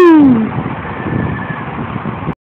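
The tail of a man's loud "Woo!" shout, falling in pitch, trails off about half a second in. After it comes a steady low rumble of street traffic.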